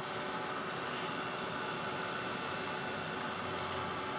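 Craft heat tool blowing hot air steadily over an ink-sprayed paper tag, heat-setting the ink.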